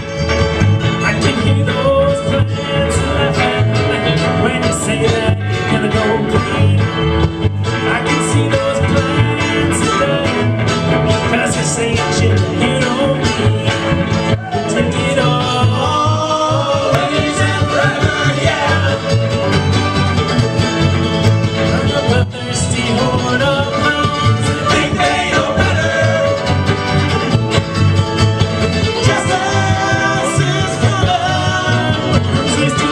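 Live string band playing an uptempo bluegrass-tinged song on banjo, fiddle, mandolin, electric guitar and upright bass, with singing coming in about halfway through.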